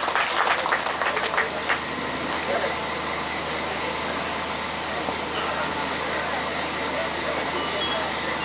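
Audience applauding: many sharp separate claps in the first two seconds, then a steady, even sound for the rest.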